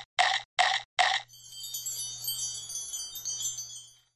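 Intro sound effects: four quick, short noisy bursts in the first second or so, then a shimmering, twinkling sparkle of wind-chime-like tones that fades out near the end, over a faint steady low hum.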